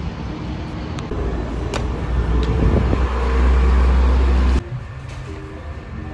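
Road traffic noise from a busy street, swelling into a loud deep rumble as a vehicle passes close. It cuts off suddenly about four and a half seconds in, leaving quieter street sound.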